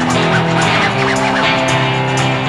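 Live rock band playing an instrumental guitar passage, strummed chords held steady, with high gliding guitar notes in the first second.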